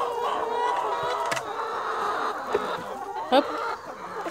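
A flock of brown laying hens clucking continuously at close range, many birds calling over one another, with one sharp click about a third of the way in.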